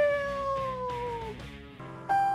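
A voice shouting one long, high cry that slides slowly down in pitch and fades out after about a second and a half. Music comes in near the end.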